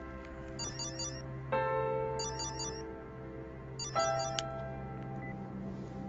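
A mobile phone ringing: three short, high, warbling electronic trills about a second and a half apart, over soft background music with long held notes.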